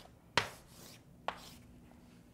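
A sharp tap, like a hard object set down on a surface, then a much fainter tap about a second later.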